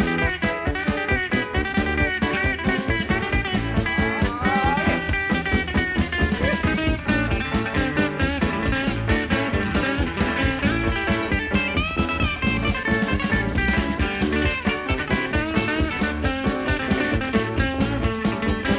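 Live 1970s electric blues band playing an instrumental passage: electric guitar leads with bending notes over bass and a steady drum-kit beat.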